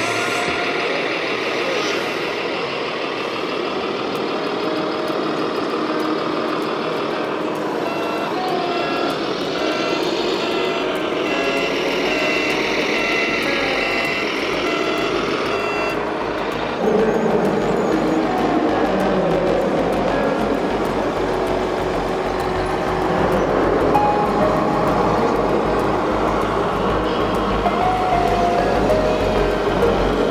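A run of evenly spaced high reversing beeps, lasting several seconds, from a radio-controlled scale forklift's sound module, over continuous vehicle noise.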